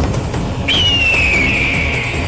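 Dramatic TV-serial background score, with a high whistle-like tone entering about two-thirds of a second in and sliding slowly down in pitch over a second or so.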